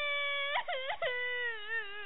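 A young child's high-pitched wailing cry: long drawn-out wavering notes, broken twice by short dips about halfway through.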